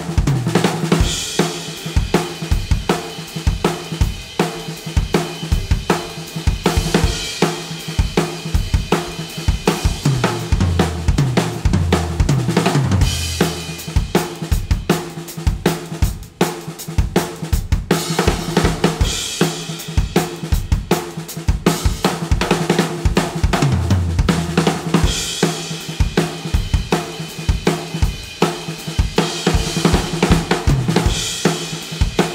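Sakae Trilogy acoustic drum kit with a brass snare and Zildjian K cymbals, played continuously: a groove that runs into fast fills around the toms, snare and kick, with crash cymbal hits returning every few seconds.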